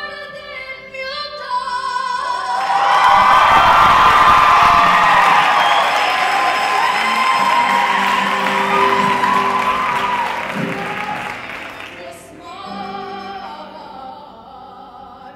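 Live stage-musical singing with a rock band: solo singing at first, then about three seconds in a loud full passage with a long held sung note, easing back to quieter singing near the end.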